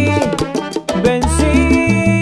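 Live salsa orchestra playing an instrumental passage between vocal lines: pulsing bass, percussion and horns, with a brief break in the band a little before one second in.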